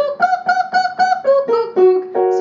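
A woman singing the "Goog" vocal warm-up: short, detached "goog" syllables on a quick scale that steps up and comes back down, landing on a longer low note near the end. As the scale goes up, the G is shaded toward a K.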